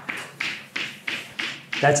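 Chalk on a blackboard: a quick run of short strokes and taps, about three a second, as lines are drawn.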